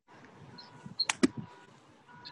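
A golf club striking a ball: one sharp crack about a second in, heard thinly through a video-call microphone over a faint steady hum.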